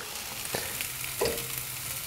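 Chopped onion and grated carrot sizzling in a hot frying pan, put in before any fat, as a spoonful of ghee is added.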